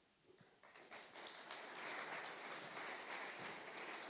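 Audience applauding in a lecture hall, the clapping building up about a second in and then holding steady.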